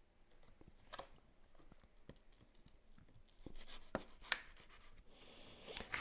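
Faint scratching and slicing of a small knife blade cutting into the thick grey paper wrapping of a cardboard shipping box, with a few sharper scrapes about a second in and around four seconds.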